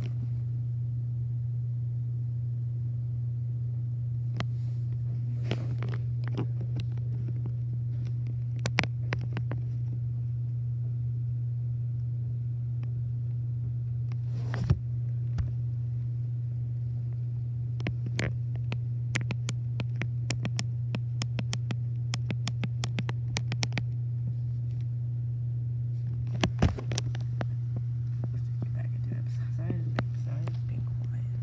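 A steady low hum with scattered light clicks and scrapes on top. A sharper knock comes about halfway through, then a quick run of clicks, and a few more knocks near the end.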